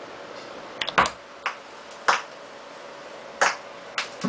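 Turntable stylus being set down on a spinning 7-inch vinyl single: a sharp click and thump about a second in as the needle touches the record, then a few separate pops from the lead-in groove over a steady low hum and hiss.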